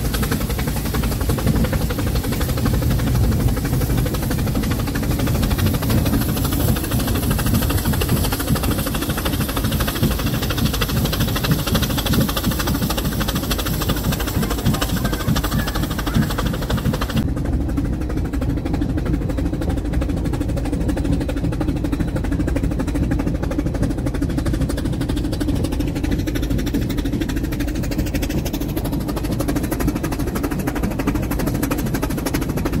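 Steam cog-railway locomotive of the Brienz Rothorn Bahn working, heard from a carriage it pushes: a steady, continuous rumble of the engine's exhaust, rack gearing and wheels on the rails. The higher hiss falls away suddenly a little past halfway while the low rumble carries on.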